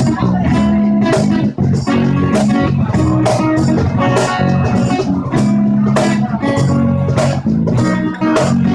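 Live acoustic trio playing an instrumental passage: guitar and electric bass over a steady cajon beat.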